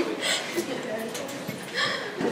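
Faint, broken bits of a man's voice over room tone.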